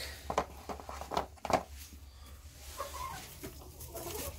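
Hen's eggs being set one at a time into a plastic egg carton: a run of light clicks and taps, the sharpest about a second and a half in.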